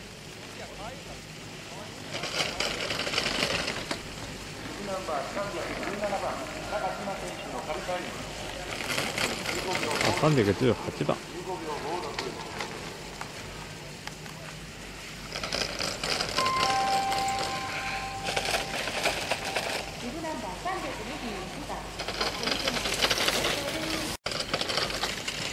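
Ski edges scraping and hissing on hard-packed snow as an alpine racer carves turns through the gates, in several separate rushes of hiss. Indistinct voices of people near the course talk underneath.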